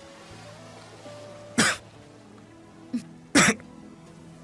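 Soft, sustained background film score, broken by two short, sharp bursts of a person's coughing, about a second and a half in and again near the end.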